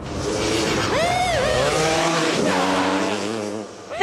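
Quad bike engine revving, its pitch rising and falling about a second in, then running at a steadier pitch before fading near the end.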